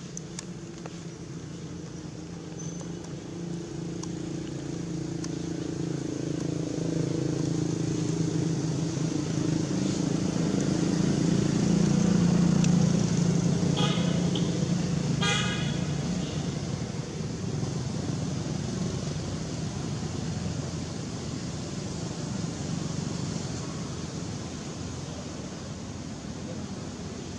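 A motor vehicle passing, its engine growing louder to a peak about halfway through and then fading away. Two short horn toots sound just after the peak.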